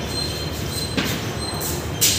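Chalk on a blackboard: a few faint, short, high squeaks and a sharp tap about a second in, over steady background hiss.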